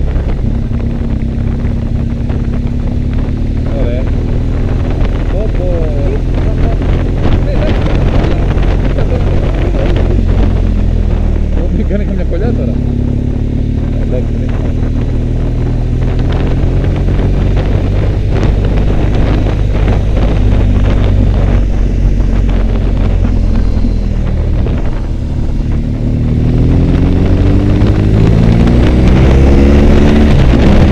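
Motorcycle engine running at road speed while riding. The engine note dips twice, then climbs steadily near the end as the bike accelerates.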